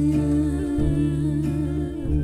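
A woman's voice holding one long sung note with a slight vibrato over sustained double bass notes; the bass moves to a new note about two-thirds of the way through.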